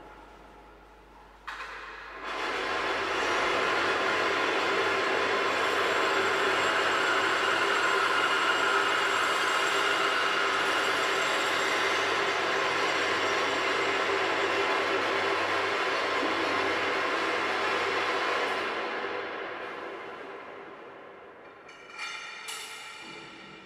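Bench drill press starting with a click, then its bit cutting into a steel tube: a loud, steady noise with several held tones that fades away near the end.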